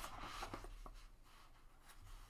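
Paper rustling as the pages of a small book are turned, loudest in the first half second and then faint, with a few light ticks and a short click near the end.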